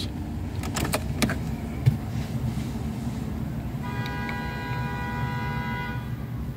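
A few sharp clicks about a second in as the car's ignition key is turned off in the steering-column lock, over a steady low rumble. Near the end a steady pitched tone sounds for about two seconds.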